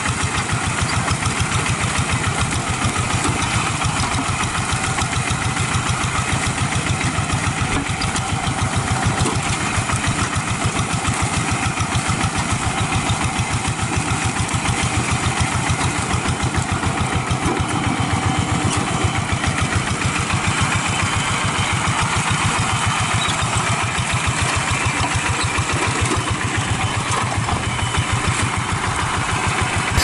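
The single-cylinder diesel engine of a two-wheel walk-behind hand tractor running steadily, its firing beating evenly and rapidly, as the tractor moves through a flooded rice paddy on iron cage wheels.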